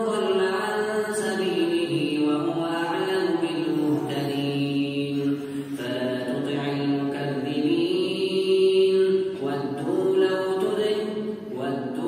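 A man's voice reciting the Quran in melodic tajwid style during prayer, holding long notes that rise and fall, amplified through a microphone in a large mosque hall.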